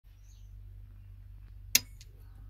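Square D well pump pressure switch snapping its contacts shut with a single sharp click near the end, over a steady low hum. The snap is the switch cutting in to start the pump.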